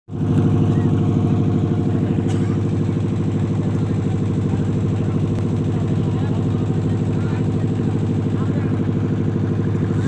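A wooden river boat's engine running steadily and loudly, with an even, rapid beat.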